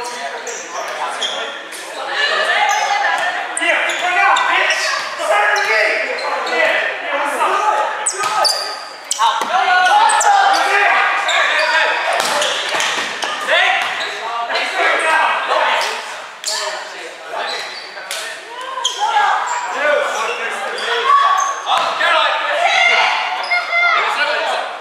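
Indoor volleyball being played in a gymnasium: players' voices calling and talking, with repeated sharp smacks of hands on the ball and other sharp knocks, echoing in the large hall.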